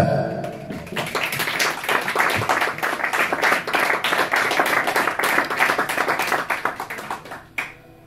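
A sharp knock at the very start, then an audience clapping, dense and irregular, from about a second in, dying away near the end.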